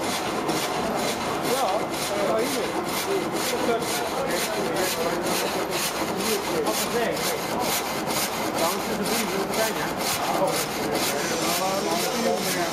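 Windmill's reciprocating frame saw cutting a log, its blade going up and down in rapid, even strokes, about three a second.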